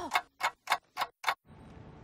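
Five sharp, evenly spaced ticks, about three and a half a second, like a clock ticking. They stop about a second and a half in, leaving a faint steady background.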